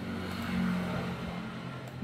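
A low, steady mechanical hum with a faint hiss, swelling slightly about half a second in and then easing off.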